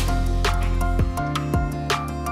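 Background music with sustained notes over a bass line and a steady beat, about two beats a second.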